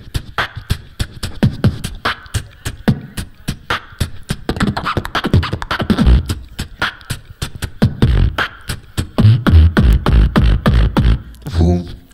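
Human beatboxing into a handheld microphone: a fast run of sharp percussive clicks and snares, with deep, heavy bass pulses coming in from about eight seconds on.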